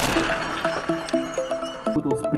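Background music with a steady pulse of short repeated notes. At the very start a brief noisy rush fades out within half a second.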